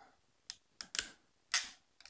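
Ratcheting crimping tool being squeezed onto a spark plug wire terminal, crimping it onto the wire's wound core: a few sharp clicks in the first second, then a short rasp about a second and a half in.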